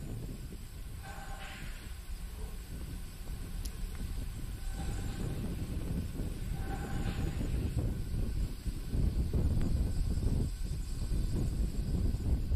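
Launch-pad microphone ambience: a low, uneven rumble with hiss, like wind on the microphone, growing louder after about four seconds, with a few faint short tones.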